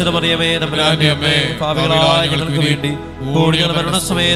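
A man's voice chanting a devotional prayer in long, sustained sung lines over steady background music.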